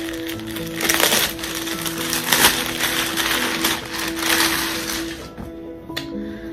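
Background music with held notes, with several bursts of rustling from clothes being handled and pulled out, the loudest about two seconds in.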